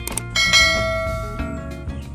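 Two quick clicks, then a bright bell-like ding that rings out about half a second in and fades over about a second, over steady background music: the click-and-bell sound effect of a subscribe-button animation.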